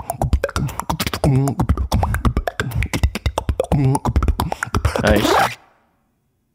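A two-man beatbox tag team performing: dense, rapid vocal percussion hits layered with sung tones that bend in pitch. The performance cuts off abruptly about five and a half seconds in.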